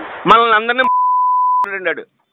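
A single steady beep lasting just under a second, dropped into a man's speech in a recorded phone call: a censor bleep covering a word. Speech is heard on either side of it.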